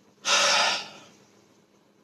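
A man's loud, breathy exhale, lasting about half a second and trailing off.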